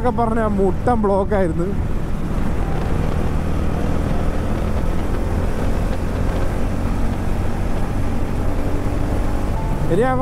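TVS Ronin's single-cylinder engine running at a steady highway cruise of about 80 km/h, an even drone over road and wind rumble with no change in pitch.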